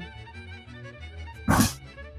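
Background music, with one short knock about one and a half seconds in: a knife knocking against the rim of a small pot as chopped onion and garlic are scraped into it.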